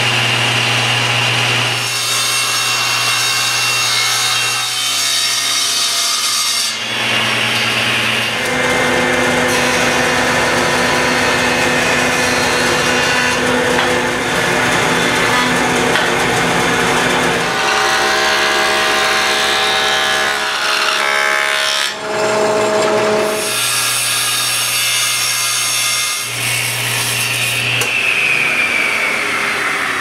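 Stationary woodworking machines milling an oak board, in a run of short cut-together passes: a table saw ripping and a jointer planing, each with a steady motor and cutting noise. Over the last few seconds a machine spins down with a falling whine.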